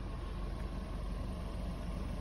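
VW Golf 1.4 TSI four-cylinder turbocharged petrol engine idling steadily, heard from behind at the twin exhaust tailpipes.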